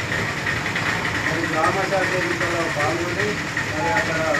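A man speaking in a hall over a steady, noisy background hum that runs throughout.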